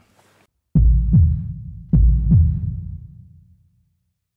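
Outro sound effect: deep thumps like a heartbeat, two beats at a time, each dropping quickly in pitch. The pairs come about a second apart, and the sound fades out near the end.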